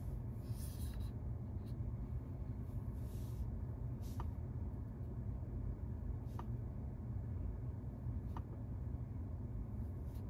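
Light fingertip taps on a car's infotainment touchscreen, about five short clicks a couple of seconds apart, over a steady low hum inside the car cabin.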